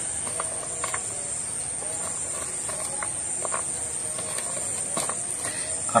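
Steady, high-pitched chirring of crickets, with a few soft clicks and taps as chili pieces are dropped onto a stone mortar.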